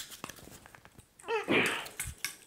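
Faint clicks and scraping of hands working at a microwave oven transformer's windings, then a short strained grunt of effort a little over a second in, as the windings stay stuck fast in the core.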